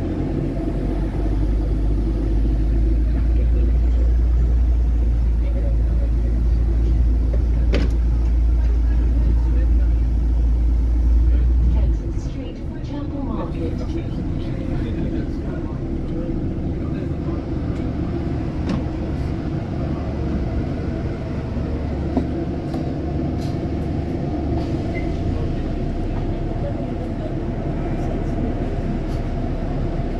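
Bus engine and road rumble heard from inside a moving double-decker bus. A heavy low drone dominates for about the first twelve seconds, then drops away suddenly, and a lighter steady rumble carries on.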